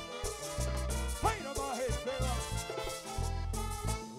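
Live band music from an accordion, brass and percussion ensemble, a Latin dance tune over a steady, rhythmic bass pulse. Notes slide up and down in pitch about a second in.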